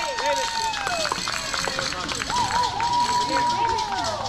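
Young players' voices yelling long, drawn-out cheers, two held calls that each slide down in pitch as they trail off, with scattered sharp clicks.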